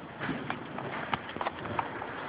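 A few irregular sharp knocks and clicks over a low, steady room background.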